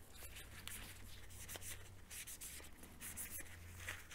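Faint rubbing and rustling of a paper kitchen towel wiping a plastic syringe barrel dry, in small irregular strokes, over a low steady hum.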